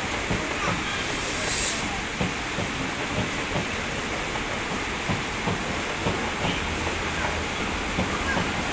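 Passenger trains moving slowly through a station, with wheels clicking irregularly over rail joints and points, a few times a second. A WAP-7 electric locomotive draws alongside near the end.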